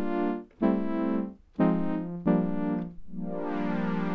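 OXE FM Synth software synthesizer playing four short chords on its brass pad preset. About three seconds in, a string pad preset takes over with a longer held chord that slowly brightens.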